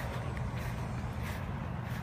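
Steady low hum with faint brushing noises a few times.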